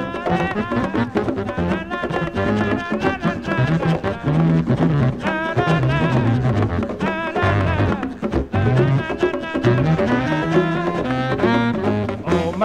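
Instrumental Latin jazz: a wind-instrument melody with vibrato over a low bass line and dense hand percussion.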